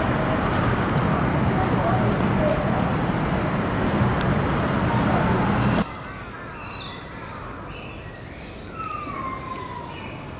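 Loud outdoor city background noise with indistinct voices, which cuts off abruptly about six seconds in to a much quieter open-air hush. In the quieter part a distant siren wails, with a long falling sweep near the end.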